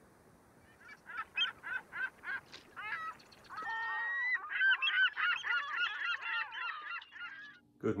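Birds calling repeatedly: single calls about three a second at first, then many overlapping calls from about halfway through.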